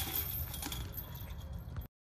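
Steel chains of a disc golf basket jangling and settling after a made putt has struck them and dropped in, cut off suddenly near the end.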